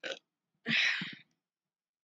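A woman's brief non-speech vocal sounds: a short breath at the start, then a breathy exhale with a slight croak, about half a second long, starting just over half a second in.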